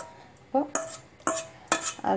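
Metal spoon scraping thick tomato purée out of a blender jar into a pressure cooker: a few short scrapes and clinks starting about half a second in, some with a brief squeak.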